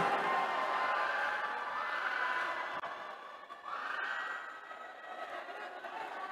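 Low, steady murmur of a spectator crowd in an indoor sports hall, with no single voice standing out.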